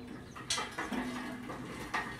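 Chain hoist being worked to raise a heavy electric motor: a few sharp metal clanks with a short squeak in between.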